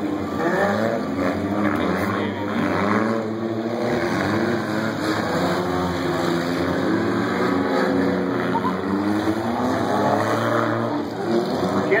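Several old stock cars' engines running and revving together on a dirt figure-8 track, their pitches rising and falling as the cars accelerate and slow through the turns.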